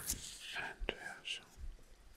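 Soft, close-miked whispering from a man's voice, with two sharp clicks, one at the start and one a little under a second in.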